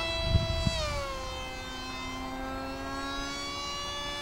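Motor and propeller of a small foam RC model YF-23 jet whining in flight. The pitch falls over the first second and a half and then holds steady. A few low bumps on the microphone come under a second in.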